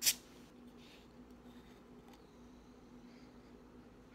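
A metal cap coming off a glass soda bottle, with a single brief, sharp hiss of escaping carbonation right at the start, followed by a few faint soft sounds.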